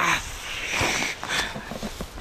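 Rustling and crackling of dry grass and pine-needle litter as a hand works around a large mushroom in the ground, with scattered small clicks of handling.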